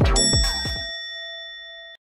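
Notification-bell 'ding' sound effect of a subscribe-button animation: a bright chime that rings on and slowly fades away. Under it, electronic music with falling bass drops ends within the first second.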